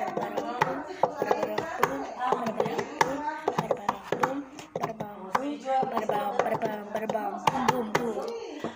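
Wooden chopsticks clicking and scraping against a plastic bowl while noodles are eaten: many sharp, irregular clicks through the whole stretch, with voices in the background.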